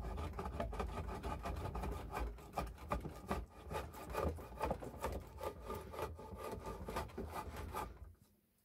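Stanley No.55 combination plane cutting a moulding along a wooden board: a continuous rough scraping of the steel cutter in the wood, full of small clicks. It stops abruptly at the end.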